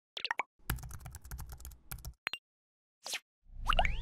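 Sound effects for an animated logo: a string of quick pops and clicks, a rapid run of clicks over a low hum, then near the end a swell with rising whistle-like tones.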